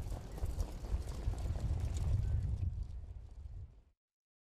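Hoofbeats of harness racehorses pacing past at speed on the dirt track: a rapid, irregular drumming of thuds. It fades near the end and cuts off suddenly.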